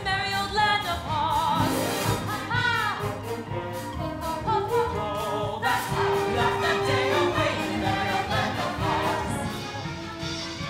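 A large chorus singing a stage-musical ensemble number with musical accompaniment, many voices together with vibrato.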